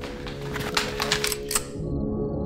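A quick, irregular series of clicks and rattles that stops near the end, over a steady low sustained music drone.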